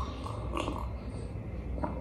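A person sipping milk tea from a glass mug and swallowing.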